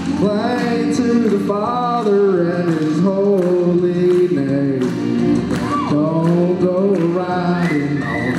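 A man singing a country song through a microphone and PA over instrumental accompaniment with a steady beat, his voice sliding between notes.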